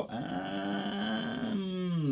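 A man's drawn-out hesitation sound, a held 'errr' or 'hmm', steady in pitch for about a second and a half, then falling away at the end.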